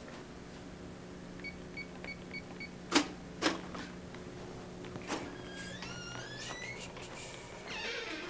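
Steady low electrical hum, then five quick beeps about a second and a half in, two sharp clicks a half second apart around three seconds, and a rising whine near the end as a hospital entrance door is unlocked and opened.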